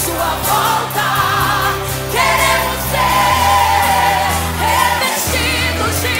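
Teen church choir singing a hymn over orchestral accompaniment, with held low bass notes underneath and voices singing with vibrato.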